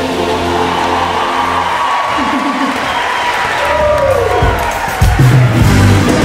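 Live concert music with a crowd cheering: a held chord gives way to a steeply falling pitch sweep, then the full band with drums comes in loudly about five seconds in.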